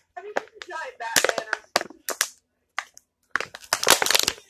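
Indistinct talking that the recogniser did not catch, in two stretches with a pause of about a second between them.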